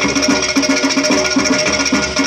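Percussion ensemble of clay-pot drums (ghatam) and hand drums playing a fast, dense rhythm, pitched pot tones repeating under quick sharp strokes, amplified through stage microphones.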